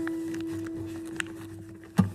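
One string of a Martin acoustic guitar ringing on and slowly dying away, set sounding by the humidifier holder being pushed down between the strings. A faint click about a second in and a sharp tap at the end.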